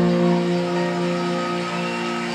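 A held final chord on a Fender Telecaster electric guitar, played clean through a modelling amp set to a '65 Deluxe Reverb sound, ringing out and slowly fading.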